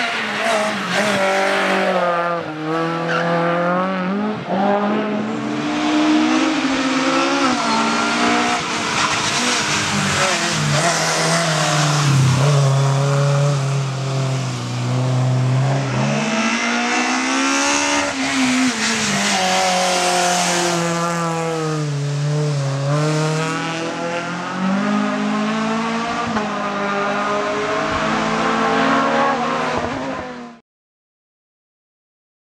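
Renault Clio race car engine revving hard and shifting through the gears, its pitch climbing and dropping again and again, with one long steady high-revving stretch about halfway through.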